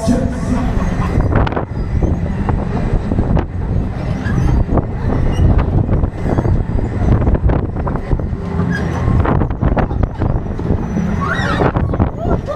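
A 1987 Huss Break Dance 1 fairground ride running at full speed, heard from aboard one of its spinning cars: a loud, steady low rumble with scattered clatter.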